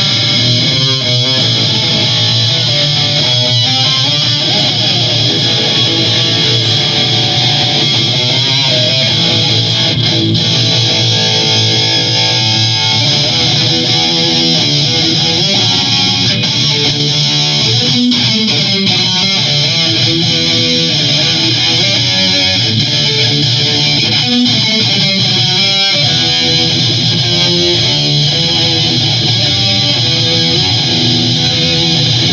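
Epiphone Extura electric guitar played loud through heavy distortion: continuous metal riffing with a few sliding notes.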